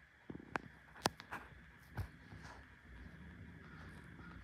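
A handful of short sharp clicks and knocks in the first two seconds, the loudest about a second in, from a phone being handled against a window frame.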